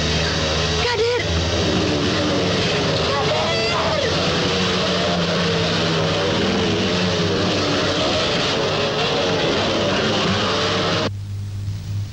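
Motorcycle engines revving up and down during a dirt-track race, mixed with a shouting crowd. The sound cuts off abruptly about eleven seconds in.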